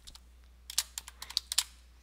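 Computer keyboard typing: a quick run of about eight keystrokes starting a little under a second in and lasting about a second.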